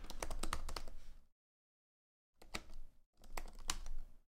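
Typing on a computer keyboard: three runs of quick key clicks, with dead-silent pauses between them.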